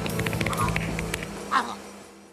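Cartoon soundtrack: a rattle of quick clicks and a short cry about one and a half seconds in, over background music that fades out at the end.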